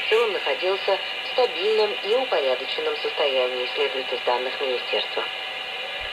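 A shortwave broadcast station speaking in a language that sounds Russian or Eastern European, played through a home-built shortwave receiver's loudspeaker. A sharp IF filter narrows it, so the voice sounds thin, with a steady hiss underneath.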